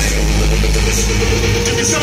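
Loud live hip-hop concert sound from the PA: a long, deep bass note held for about a second and a half, then fading, over the din of the crowd.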